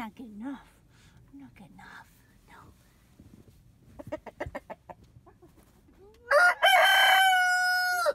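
Rooster crowing once near the end, one long call that ends on a held, steady note. Before it there are only faint sounds and a quick run of clicks about four seconds in.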